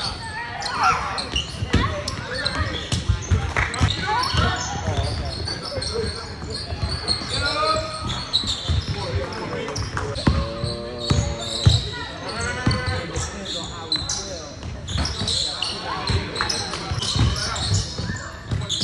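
Live basketball play in a large gym: a ball bouncing on the hardwood floor among players' footfalls, with voices and a laugh from players and onlookers.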